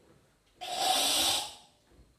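A karate practitioner's forceful, hissing exhalation, a controlled kata breath, starting about half a second in and lasting about a second.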